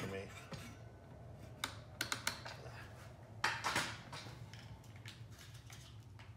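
A few light clicks and knocks as a circular saw and its extension cord are handled, with a cluster of sharper clicks about three and a half seconds in; the saw is not running. A faint low hum sits underneath.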